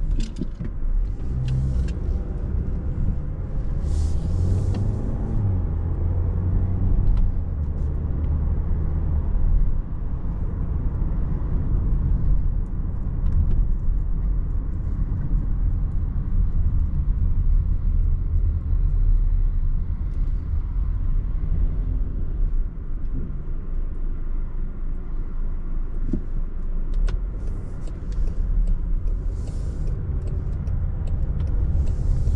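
Inside the cabin of a 2024 Range Rover Evoque, its 2.0-litre four-cylinder petrol engine and road noise make a steady low rumble while driving. The engine note rises over the first few seconds as the car picks up speed.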